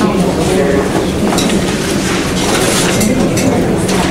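Many people in a room talking among themselves at once: indistinct, overlapping chatter over a steady low hum.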